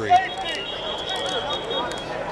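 Background chatter of several people talking, with a few light clicks and a faint, steady high-pitched tone from about half a second in.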